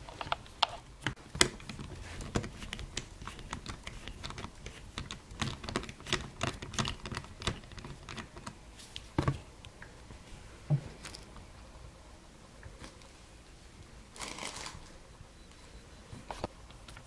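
A small Phillips screwdriver turning out the screws that hold a laptop screen to its hinge brackets: rapid, irregular clicks and ticks of metal on metal, thinning out after about eight seconds. A short rustle comes near the end.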